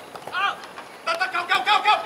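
Players shouting on a football pitch: one short, high call about half a second in, then a quick string of raised calls through the second half.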